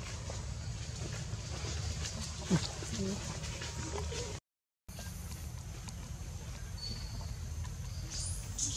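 Outdoor ambience: a steady low rumble with faint, indistinct voices and a few brief faint sounds. The sound drops out completely for about half a second midway.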